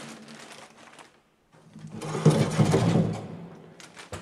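The bell-tower entrance door with its grille being worked open: a rapid rattling clatter lasting about a second and a half, starting just under two seconds in after a brief gap.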